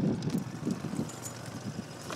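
Wind buffeting the microphone aboard a small motorboat under way: an uneven, gusty low rumble.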